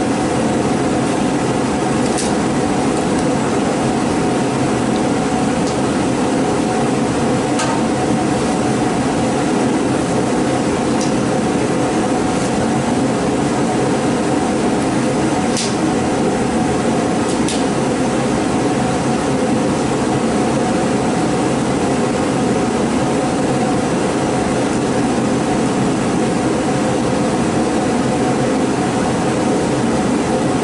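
A steady mechanical drone, like a fan or blower, running loudly, with a handful of brief sharp rips of masking tape being pulled from the roll and torn while the tape is laid.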